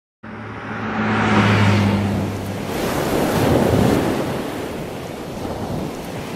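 Whoosh sound effect for a logo reveal: a rushing noise like wind or surf that starts suddenly, swells twice and fades, with a low steady hum under the first two and a half seconds.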